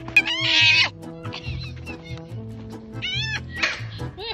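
Foxes giving high, wavering screams in two harsh bouts, one at the start and one about three seconds in, each just under a second long, over background music.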